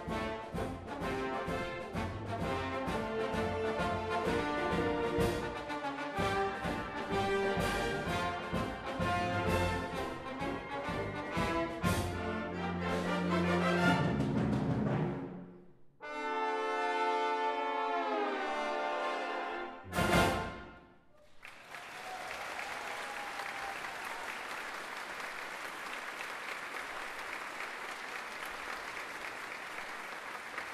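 Four trombones soloing with a youth wind band in a brisk, rhythmic passage, then a held chord that slides downward in pitch and a short final chord about two-thirds of the way through. Audience applause follows for the rest of the time.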